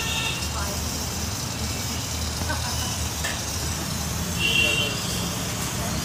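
Steady hiss of steam escaping from a thin pipe fitted to a pressure cooker on a gas burner, over a constant low rumble.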